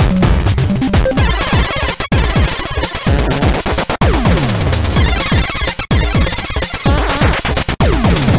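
Electronic music track in a dense, glitchy synth passage, with repeated falling pitch sweeps. The sound cuts out briefly about every two seconds.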